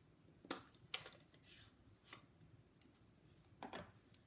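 A few faint clicks and taps of a plastic ink pad case being handled and opened.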